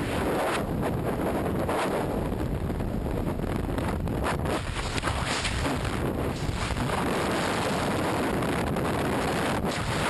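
Rushing air in skydiving freefall blasting a helmet-mounted camera's microphone: a loud, steady roar of wind noise.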